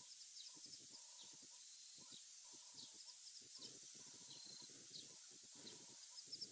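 Near silence of the bush, with faint short chirps and calls from small animals repeating irregularly every second or so.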